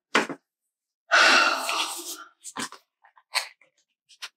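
A person's loud, breathy exhale about a second in, fading over about a second, after a short sharp noise at the start; a few small clicks follow.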